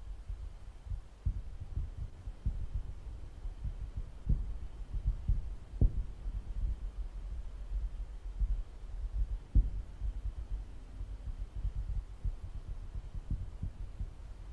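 Low, irregular rumbling thumps with no steady rhythm.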